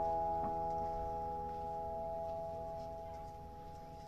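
Last chord of an amplified lap slide guitar ringing out and slowly dying away after the playing stops, with a faint tap about half a second in.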